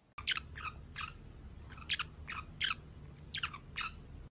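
A small parrot giving short chirps that fall in pitch, about eight of them, mostly in quick pairs, over a low steady hum.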